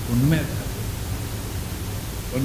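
A man's voice through a microphone breaks off about half a second in. A steady hiss with a low hum carries on through the pause.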